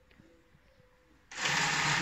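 Industrial sewing machine stitching: a sudden, loud, fast run of needle strokes that starts about two-thirds of the way in, after a quiet stretch.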